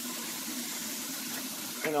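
A Zipper carpet-cleaning wand working hot-water extraction on commercial carpet: a steady rushing hiss of suction and spray as it is drawn across the pile.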